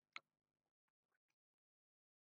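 Near silence, with one short faint click just after the start and a few fainter ticks after it.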